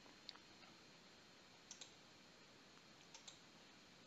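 Faint computer mouse clicks over near silence: a single click, then two quick pairs of clicks.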